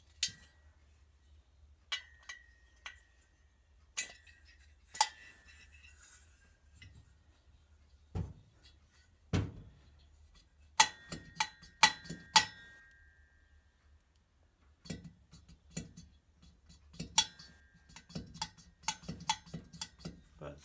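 Sharp metallic clinks and taps with a brief ringing note, coming in scattered groups, from a Citroën 2CV cylinder head and its valve-guide parts being handled and knocked on a workbench. Two duller thumps come near the middle.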